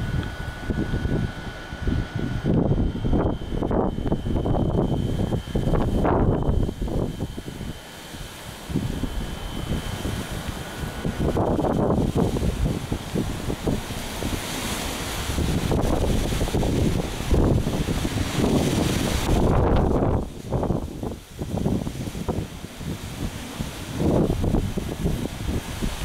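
Gusty wind buffeting the camera microphone, rumbling in uneven surges that rise and fall every second or so.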